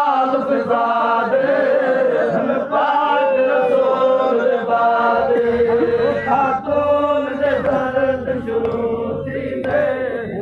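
Several voices chanting a devotional song together in long, held, wavering lines.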